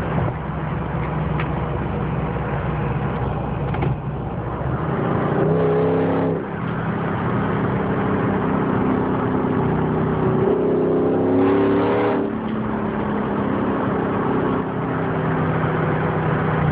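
Supercharged Jeep Grand Cherokee SRT8 V8 heard from inside the cabin, accelerating hard twice. Each time its pitch climbs and then drops sharply at a gear change, about 6 seconds in and again about 12 seconds in.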